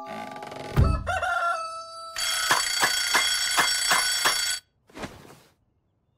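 Cartoon wake-up cue over music: a low thump, then a rooster crowing, then a bell alarm clock ringing with a rapid, even hammer beat for about two seconds that cuts off suddenly.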